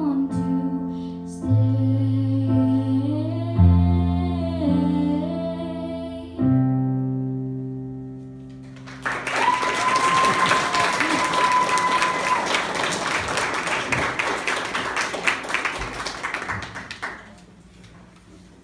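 A girl singing to her own electric piano chords on a Yamaha Motif keyboard, ending on a held chord that dies away. About nine seconds in, the audience breaks into applause, with one long high call over it, and the clapping fades out near the end.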